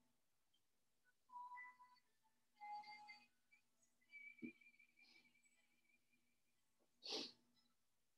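Near silence: faint room tone, with a short breath near the end.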